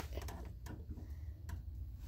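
Faint crackling of dry hay pushed aside by a hand, with a few light ticks about halfway through.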